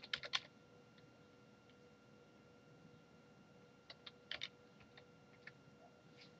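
Faint typing on a keyboard: a quick run of keystrokes right at the start, a pause, then another short burst about four seconds in and a few single taps.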